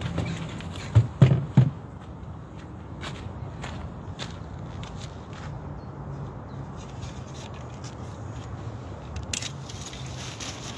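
Handling noises of things being packed up on a wooden bench: three knocks about a second in, then faint scraping and shuffling with small clicks, and a rustle of umbrella fabric near the end as the umbrella is taken down.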